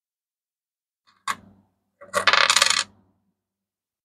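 Lincoln cents clinking against other coins: one sharp click about a second in, then a loud, rapid jingle lasting under a second.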